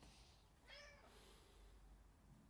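A domestic cat's single short, faint meow about a second in, a cat asking to be fed.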